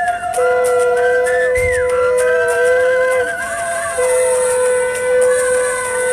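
Several conch shells (shankh) blown together in long, steady, overlapping notes at different pitches, each breaking off briefly for breath and starting again. A higher warbling note runs over them around the middle.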